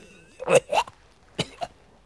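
A person coughing in short bursts, two pairs of brief coughs about a second apart.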